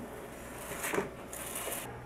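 Brief handling noises of mosaic-grouting work: a light knock about a second in, then a short scraping hiss.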